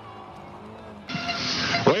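Low background for about a second, then the remote commentator's radio link opens with a loud, thin rush of noise, ending in a short spoken "oui".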